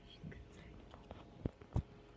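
A cat crunching a potato chip close to the microphone: scattered small crackles and clicks, the two loudest about a second and a half in.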